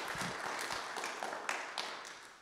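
Applause from a small audience fading out into a few scattered single claps.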